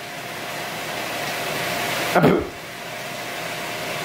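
Steady hiss with a faint hum from food cooking on the kitchen stove, growing slowly louder over the first two seconds. A short bump cuts in about two seconds in.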